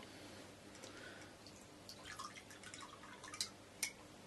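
Whisky poured from a glass bottle into a tumbler: a faint, patchy trickle of liquid, with two short sharp clicks near the end.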